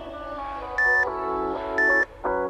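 Workout interval-timer countdown beeps, a short high tone once a second, marking the last seconds of a rest period, over background pop music.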